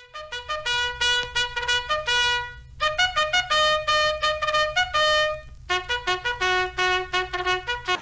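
Intro music: a solo trumpet playing a tune of short notes in three phrases, with brief breaks about three and five and a half seconds in.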